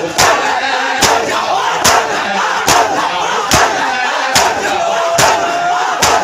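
Large crowd of Shia mourners doing matam: many hands striking bare chests together in one loud beat, seven times, a little faster than once a second. A continuous mass of crowd voices chants between the beats.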